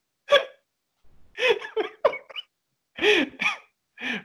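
A man laughing hard in a few short, breathless bursts with catches of breath between them.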